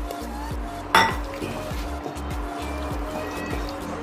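A steel bowl clinks once sharply against a pressure cooker as a thick yogurt paste is scraped into the curry, followed by soft knocks of a spatula stirring in the pot.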